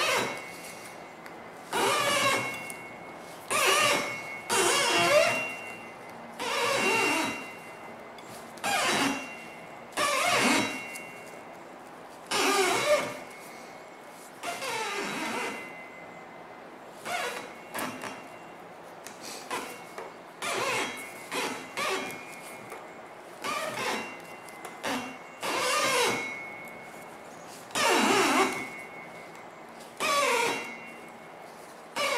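Thin jute string squeaking as it is pulled through a cardboard tensioner and wrapped tight around a firework shell break. The pulls come one after another, one every second or two, each squeak under a second long with a sliding pitch.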